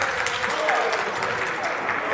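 Steady applause from council members in the chamber, with faint voices underneath.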